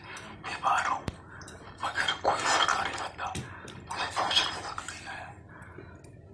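A person speaking in short phrases with pauses between them, and a single sharp click about a second in.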